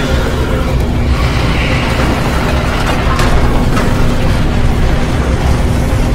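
Loud, continuous low rumbling booms of explosion-type battle sound effects over music, with sharper hits about one second and about three seconds in.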